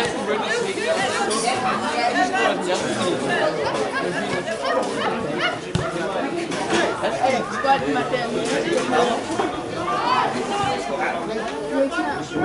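Several people chatting at once close by, their voices overlapping without a break.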